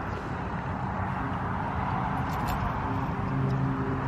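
Steady, even outdoor background noise, a hiss with no distinct events in it.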